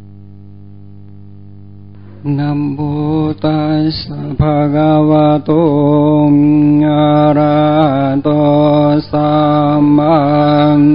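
Buddhist chanting: a single voice singing long, held notes in a mantra style over a steady low drone. The drone sounds alone for about the first two seconds before the chant comes in.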